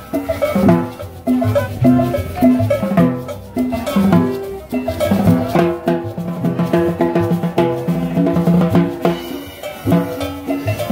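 Live band playing dance music: a drum kit with snare and bass drum keeps a steady beat under a bass line and a melody on pitched instruments.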